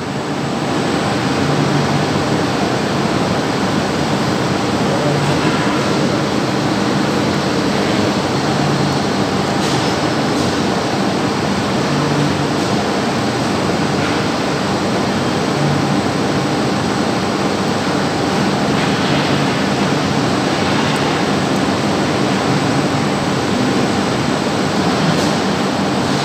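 Steady, fairly loud rushing noise with a faint low hum under it, and a few faint clicks.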